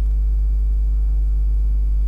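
Loud, steady low electrical hum, like mains hum picked up by the recording, with fainter steady overtones above it.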